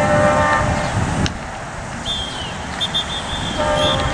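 A horn sounds with a steady, unwavering note that ends about half a second in and comes back briefly near the end. Under it runs a low rumble of wind on the microphone.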